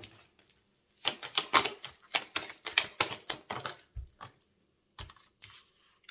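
A deck of divination cards being shuffled by hand: a quick run of papery clicks for about two and a half seconds, then a few scattered clicks and knocks.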